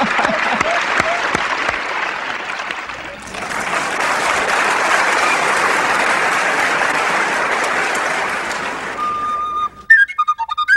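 Audience applauding: the clapping dips briefly about three seconds in, swells again, and fades near the end as a single held tin whistle note begins.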